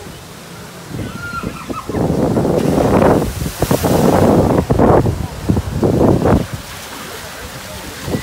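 A log-flume boat comes down into the water: a loud rush and splashing of water from about two seconds in, which dies away after about six seconds, with voices mixed in.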